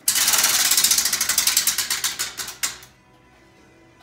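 Prize wheel spinning, its clicker flapping rapidly against the pegs. The clicks slow and space out until the wheel stops a little under three seconds in.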